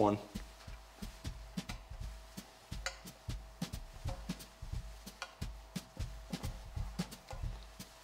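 Cloth pocket square being handled and folded by hand: soft rustling with many small, irregular clicks and taps, over a faint steady hum.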